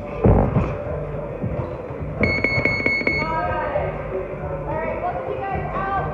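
A thump of a gloved punch landing early on. About two seconds in, a gym round timer sounds a steady electronic buzzer tone for about a second, signalling the end of the sparring round.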